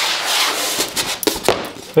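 Wooden contact printing frame with metal spring bars being handled and turned over: a rubbing, sliding sound for about a second, then a couple of sharp clicks.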